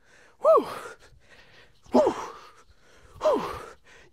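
A man's voice crying out 'ooh' three times, about a second and a half apart. Each cry is short, starts high and falls in pitch, and trails off into a breath.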